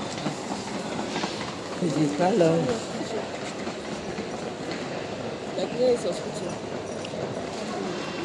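Steady hubbub of a busy airport terminal hall, with short bits of nearby talk about two and six seconds in.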